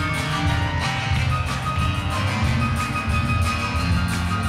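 Grand piano played in a lively, busy piece, full chords over a strong bass.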